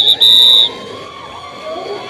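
A referee's whistle blown hard in a quick run of short blasts, very close to the microphone, cutting off about two-thirds of a second in.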